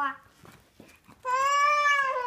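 A young girl's voice: a short syllable, a brief pause, then one long, high-pitched drawn-out vowel starting a little over a second in, as she reads a story aloud.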